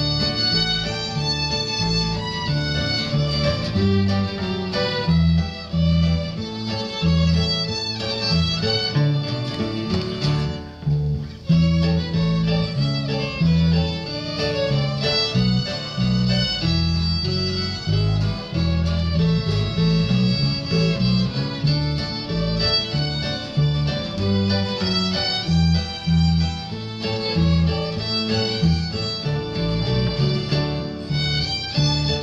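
Three fiddles playing a tune in unison over acoustic guitar accompaniment, with a brief break in the music about eleven seconds in.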